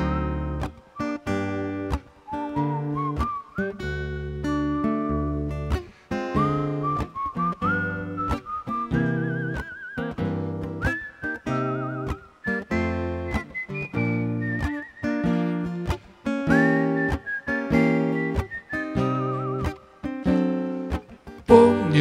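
Acoustic guitar playing steady strummed chords with a whistled melody over them, the tune gliding up and down with a wavering vibrato on its held notes: an instrumental break between sung verses.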